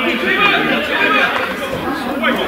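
Indistinct chatter of several people's voices talking over one another.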